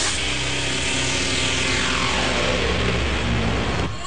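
Live electronic dance music without vocals: synthesizer and programmed beat over steady bass notes, with a long falling synth sweep. The music cuts off near the end.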